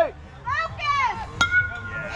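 A youth metal baseball bat striking a pitched ball about one and a half seconds in: a sharp crack followed by a steady, ringing ping. Shouting voices come just before it.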